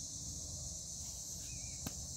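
Steady high-pitched chorus of insects, with a single sharp knock of the cricket ball near the end.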